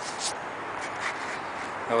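Steady outdoor background noise with a few faint rustles, and a voice beginning a word at the very end.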